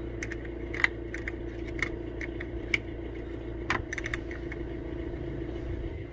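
Light metallic clicks and clinks of a spanner working the nut on a car battery terminal clamp, irregular, about one a second, as the terminal is tightened. A steady low hum runs underneath.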